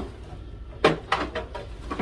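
A quick clatter of about four sharp knocks and clicks within half a second, a little under a second in, from household objects being handled, over a low steady room hum.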